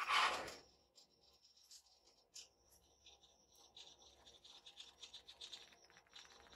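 A short scraping rustle, under a second long, as a hand moves a spray can. After it come only faint, scattered light ticks and scratches.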